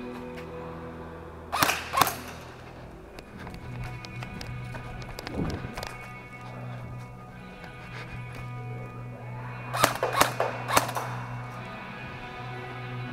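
Background music, cut by sharp single shots from an airsoft MP5 electric gun (AEG). There are two shots about a second and a half in, and a quick run of four near the end.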